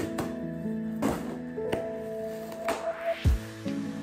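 Instrumental background music: a soft track with held keyboard notes and a few light percussive taps.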